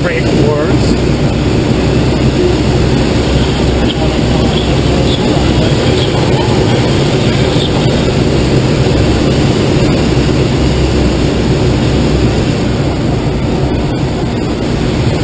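Steady rush of air over a glider's canopy and fuselage in gliding flight, heard inside the cockpit as a loud, even noise with a low rumble.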